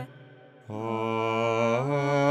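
Liturgical hymn sung in Polish. After a short breath pause, the singing comes back about two-thirds of a second in on a long held note that dips near the end: the start of the hymn's closing Amen.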